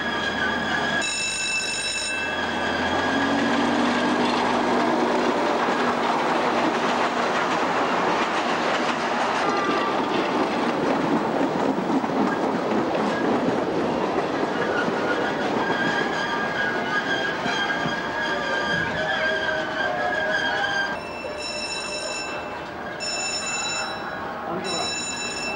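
Children's miniature ride-on train running along its track with a steady rumble and clatter of wheels. There is a short high toot of its whistle about a second in and two more toots near the end.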